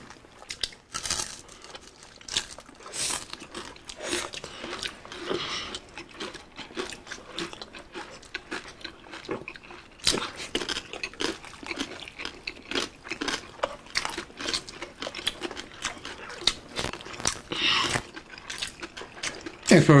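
Crispy deep-fried pork belly (bagnet) being bitten and chewed, with a dense run of short, irregular crunches and wet chewing sounds.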